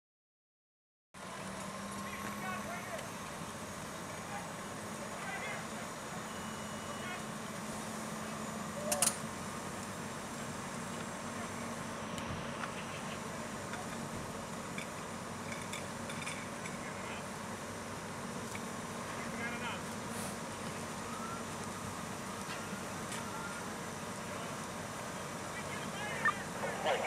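Fire engine running steadily with a low, even hum, under faint voices, starting after a brief moment of silence; one sharp knock about nine seconds in.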